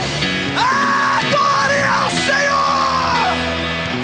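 Live worship band playing rock-style music, with a loud voice holding long, high, shouted notes over it from about half a second in to near three seconds.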